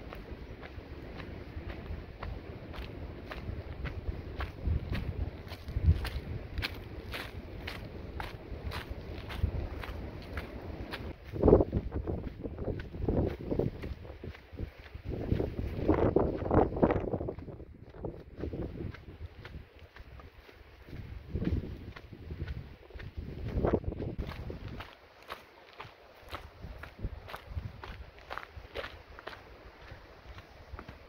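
A hiker's footsteps crunching at a steady walking pace on a dirt and gravel trail, with a low wind rumble on the microphone through the first part.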